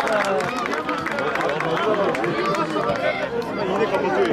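Many high-pitched voices shouting and calling over one another throughout: the sideline crowd and young players at a children's football match.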